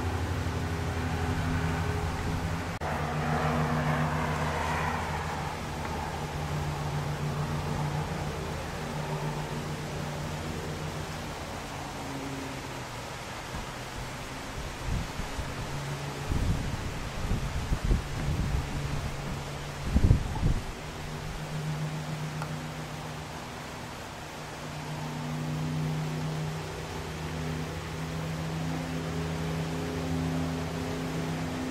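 Small camera drone's propellers humming steadily in a low, multi-toned drone. Gusts of wind thump on the microphone around the middle, the strongest about two-thirds of the way through.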